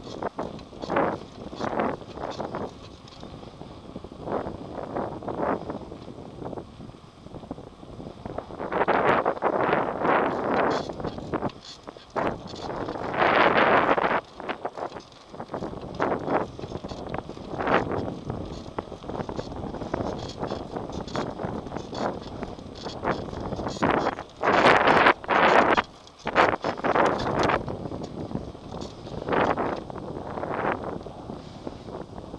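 Wind buffeting the microphone of a camera on a moving bicycle, in irregular gusts, loudest around nine, thirteen and twenty-five seconds in.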